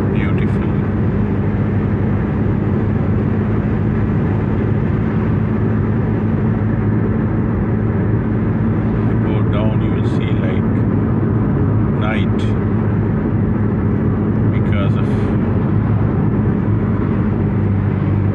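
Steady road and engine noise inside a moving car's cabin at highway speed, a constant low drone.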